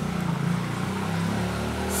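An engine running nearby, a low steady hum whose pitch wavers slowly.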